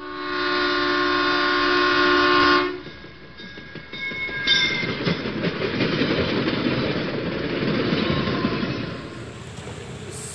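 Train sound effect: a multi-tone train horn held for nearly three seconds, then the rumble of a train running past, which fades near the end.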